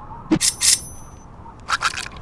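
Metal hatchet blade strikes: a sharp hit and then two loud clangs, one leaving a brief metallic ring, followed by three quick hits near the end.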